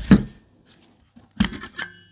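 Hard plastic housing of a Parkside X20V Team 4Ah battery pack being handled and lifted off its cell pack. There is a knock at the start, then a quick cluster of plastic clicks and clacks about one and a half seconds in.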